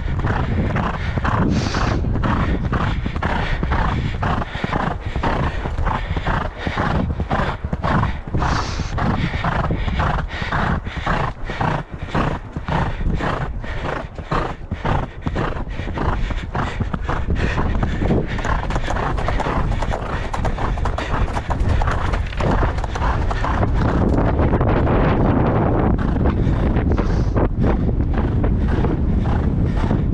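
A horse's hoofbeats on a sand gallop track, about two to three a second in a steady rhythm, heard from the saddle over heavy wind rumble on the microphone. From about 24 s the hoofbeats fade and the wind noise grows louder and more even.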